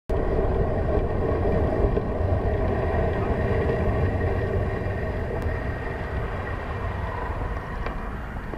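Steady wind noise on a bicycle camera's microphone with tyre noise from a bicycle rolling along the road, easing off a little as the bike slows.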